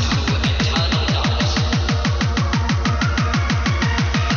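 Hardcore dance music in a live DJ mix: a fast, even run of distorted kick drums, each hit dropping in pitch, with synth sounds on top.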